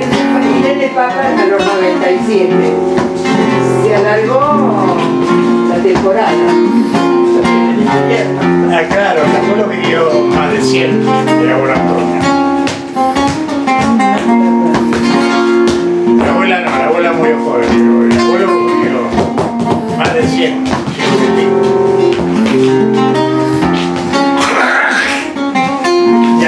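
Live flamenco guitar, strummed and plucked, with a voice singing over it and frequent sharp percussive strikes.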